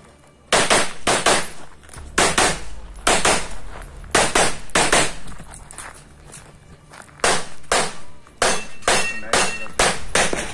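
Pistol shots fired in quick pairs (double taps) during an IPSC stage run, with about a dozen and a half loud shots in all and a pause of about two seconds in the middle as the shooter moves between positions.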